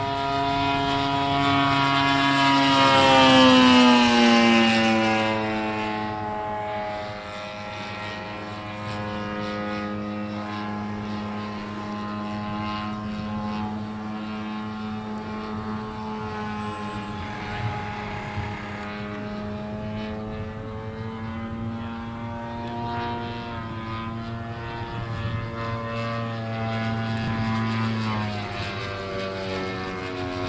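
Engine of a large-scale radio-controlled P-39 Airacobra model running in flight, its propeller note droning throughout. The model passes close about three to four seconds in, louder, with its pitch dropping as it goes by, then drones on steadily farther off.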